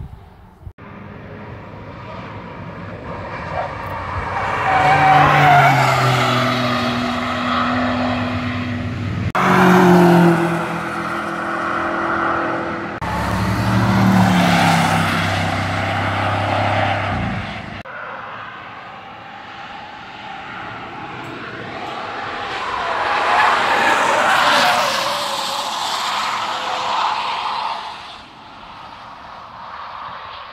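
Cars driving past on a race track one after another, each engine rising to a peak and fading, its pitch gliding down and up as the car brakes and accelerates through the corners. The loudest passes come about five, ten, fourteen and twenty-four seconds in, and several end abruptly.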